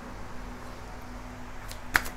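Quiet room tone with a steady low hum. Near the end, a single sharp click as a deck of tarot cards is picked up from the table.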